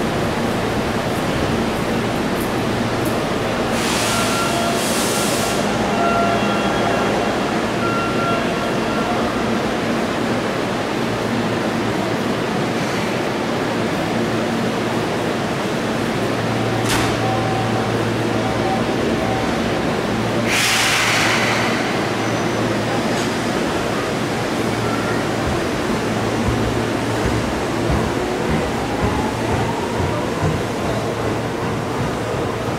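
Steady underground station platform noise from crowd and ventilation. It is broken by two short hisses, about 4 and 21 seconds in, and a sharp click about 17 seconds in. A faint rising whine near the end comes from a train's electric motors as it moves.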